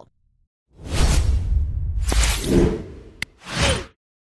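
Whoosh sound effects of a channel logo sting: a long swish about a second in, a second swish about two seconds in, a sharp click, then a short last whoosh that cuts off just before the end.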